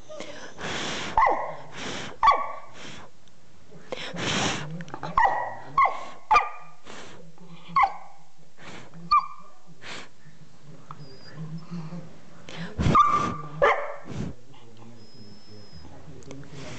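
Beagle puppy giving a string of short yips, small barks and whines, many dropping in pitch, in reaction to breath being blown on her. A few long rushes of blown air come about a second in and again around four seconds in.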